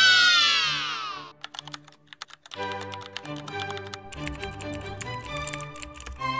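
A stock 'Yay!' sound effect of a group of children cheering, falling in pitch over about a second. It is followed by computer keyboard typing sound effects, rapid clicking that runs to the end over background music.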